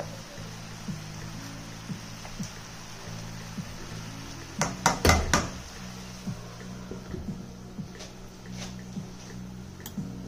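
Soft background music plays throughout. About five seconds in, a quick cluster of four or five sharp clanks sounds as tongs and a glass lid knock against the frying pan while it is covered, with a few lighter ticks after.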